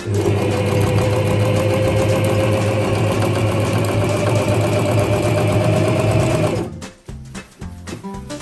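Electric sewing machine running steadily as it stitches an elastic waistband onto knit fabric. Its hum rises slightly in pitch near the end, and it stops about two-thirds of the way through.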